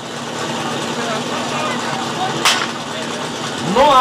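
Starting shot for a firefighting-sport team attack: a single sharp crack about two and a half seconds in, over a steady engine-like hum and crowd chatter. Near the end, a rising-and-falling cry, the loudest moment, follows as the team sets off.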